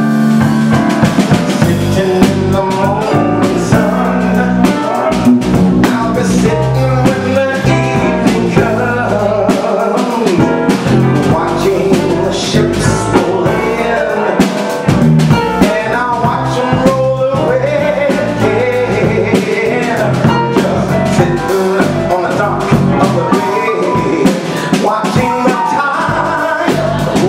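A small live band playing a soul song with a steady beat: a man sings lead into a microphone over electric keyboard and drum kit.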